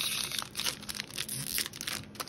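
Foil wrapper of a baseball-card pack crinkling and tearing as it is pulled open by hand, in quick, irregular crackles.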